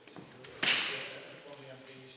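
A sudden loud burst of rushing noise about half a second in, fading away within about half a second, with a man speaking faintly around it.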